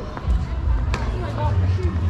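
Indistinct voices of people on the street over a heavy low rumble on the microphone, with a few light clicks.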